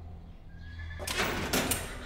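A horse in a stall gives a loud, breathy neigh starting about a second in and lasting about a second.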